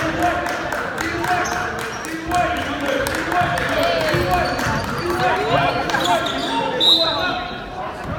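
A basketball dribbled on a hardwood gym floor during play, with sneakers squeaking and spectators talking in the echoing gym.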